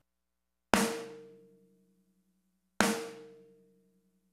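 Sampled snare drum struck twice, about two seconds apart, each hit sharp and ringing out over about a second. It plays through a compressor set to a 20:1 ratio and is heavily compressed, by about 14 to 17 dB.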